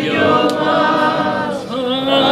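Male voice singing a rebetiko song in long held, wavering notes, with other voices singing along and band accompaniment; a short break for breath near the end before the next phrase.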